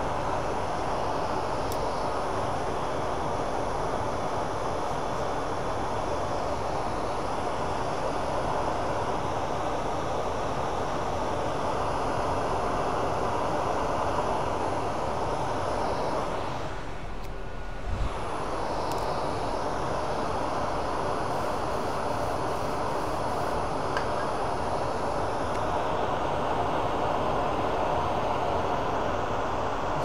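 Lathe running steadily with a pen blank spinning between centers, a constant mechanical hum. About sixteen seconds in the sound dips briefly, and a single thump follows at about eighteen seconds.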